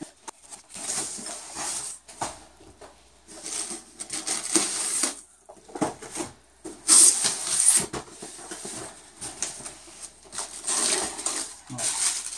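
Cardboard box and plastic packaging being handled and rustled, in irregular bursts, the loudest about seven seconds in.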